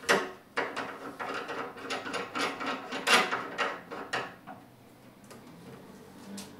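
Threaded rod being screwed by hand into the corner of a glass terrarium base: irregular scraping clicks and small knocks, the loudest about three seconds in, dying away after about four and a half seconds.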